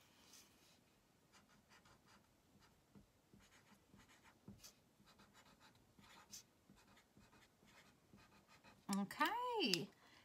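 Black marker writing on paper in short, faint strokes. A brief vocal sound follows about nine seconds in.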